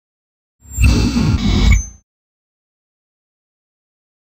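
A loud sound effect for an animated intro, about a second and a half long, deep and rumbling with a hiss over it, starting suddenly out of dead silence and cutting off.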